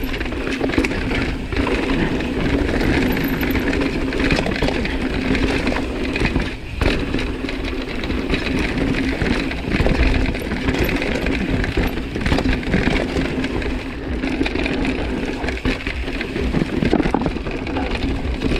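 Mountain bike tyres rolling fast over a dirt and rock trail, with a steady rumble and frequent knocks and rattles as the bike goes over bumps.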